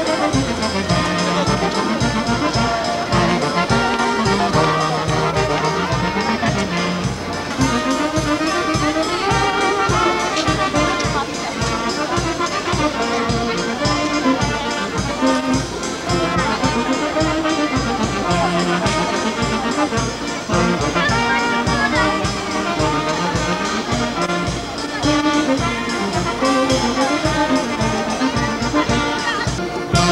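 Polish wedding band playing a march: brass and saxophone carry the tune over a moving bass line, with a bass drum and cymbal keeping a steady beat.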